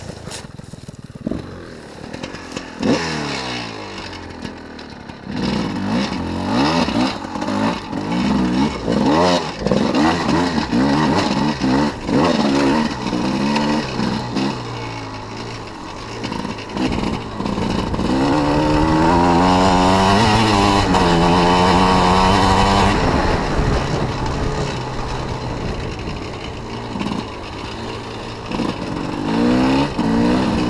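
Off-road racing motorcycle's engine revving up and down over and over as it is ridden, its pitch climbing with each opening of the throttle. It is quieter for the first few seconds, then held at high revs for several seconds around the middle.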